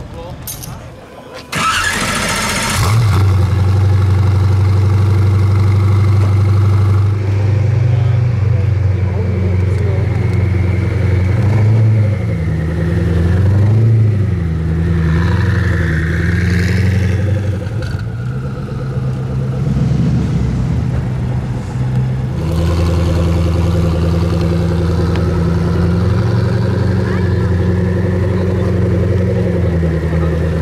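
Koenigsegg Agera's twin-turbo V8 starting with a loud bark about two seconds in, then running and pulling away with a few light blips of the throttle.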